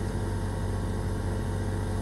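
Steady low electrical hum, a mains hum carried by the sound system, in a pause between spoken sentences.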